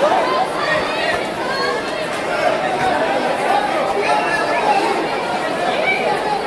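Crowd chatter: many voices talking at once in a large hall, with no single voice standing out.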